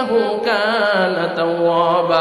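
A man's voice chanting in the drawn-out, sing-song tune of a Bengali waz sermon through a microphone and PA. He holds long notes with a wavering vibrato, and the pitch steps down to a lower held note about halfway through.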